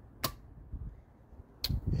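A single sharp click from the electric motorcycle's high-voltage contactor closing as the key switch is turned on, a sign that the 72-volt system is now live. Faint low rumble follows.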